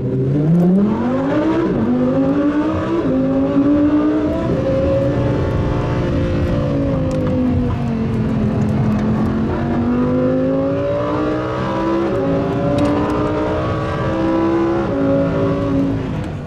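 A car engine accelerating hard through the gears. Its pitch climbs with brief drops at each shift, sinks through the middle, then pulls up again with more shifts near the end.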